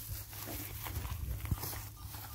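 Shuffling steps and rustling on dry rice straw as calves and handlers move around, over a low steady rumble, with a single sharp knock about a second and a half in.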